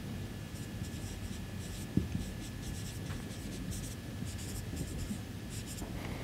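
Marker pen writing on a whiteboard: a run of short, faint scratchy strokes as words are written out.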